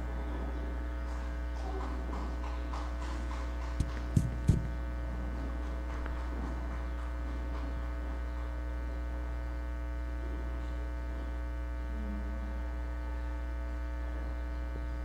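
Steady electrical mains hum from a live microphone and sound system. About four seconds in come three short, sharp thumps from the handheld microphone being handled.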